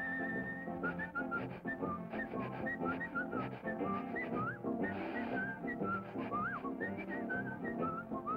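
A whistled tune over a jaunty cartoon band score, the whistle sliding up and down between notes. A short noisy burst cuts in about five seconds in.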